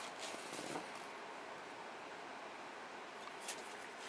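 Quiet room tone: a steady faint hiss with a few soft handling clicks.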